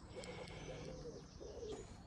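Faint cooing of a bird: a low call lasting about a second, then a shorter one.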